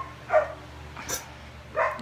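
A dog barking a few short, separate times.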